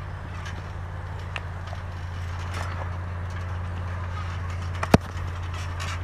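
Wrestlers moving on a backyard trampoline mat: faint knocks and shuffles over a steady low hum, with one sharp smack about five seconds in.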